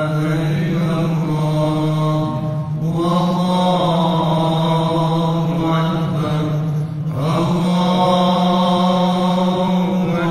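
A man's melodic Islamic chanting in long, held phrases, with short pauses for breath about three and seven seconds in. A steady low tone carries on under the pauses.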